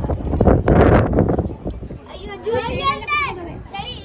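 A loud rush of wind buffeting the microphone for about the first second and a half, then people talking, one voice high-pitched.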